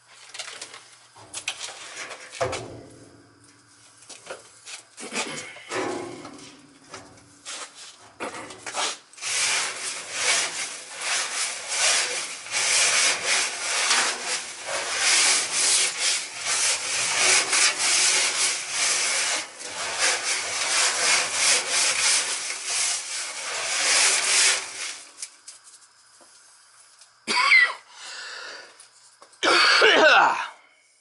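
Granular Speedy Dry oil absorbent being scraped and rubbed over the steel floor of an emptied heating-oil tank, soaking up the last of the oil. A few separate scrapes at first, then a long run of fast, even scraping strokes that stops a few seconds before the end, followed by a couple of short sharp sounds.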